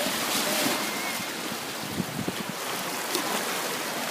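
Shallow sea water washing steadily against a rocky shore, with faint distant voices.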